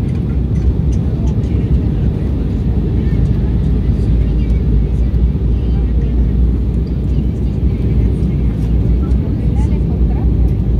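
Steady low cabin roar of an Embraer 190 airliner in flight on approach: the hum of its turbofan engines and rushing airflow, heard from a window seat.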